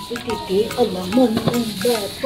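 Clear plastic bag crinkling and rustling in short crackles as a potted chili plant wrapped in it is handled.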